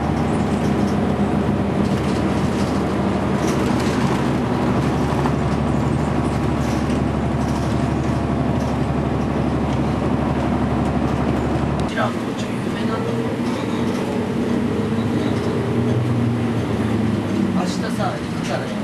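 Inside a moving Iwasaki Bus: engine and road noise as a steady, loud drone. About twelve seconds in, the deepest part of the engine drone drops away.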